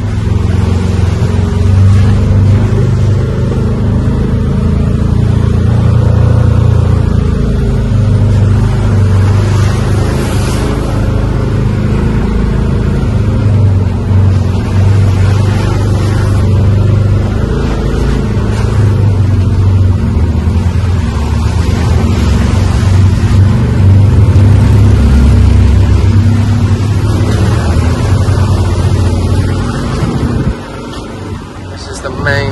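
Engine of an open side-by-side utility vehicle, a low steady drone as it drives along, heard from a seat inside the open cab.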